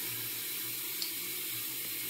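Bathroom faucet running steadily into the sink, with a light click about a second in.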